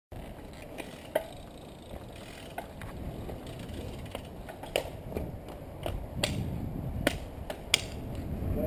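Road bike rolling along a street, heard from a bike-mounted camera: a steady low wind and road rumble with sharp clicks and rattles from the bike and its mount, about six of them, irregularly spaced.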